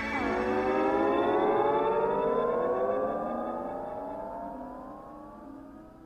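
Closing synthesizer chord of a song: its pitch drops suddenly, then several tones glide slowly upward together while it fades out.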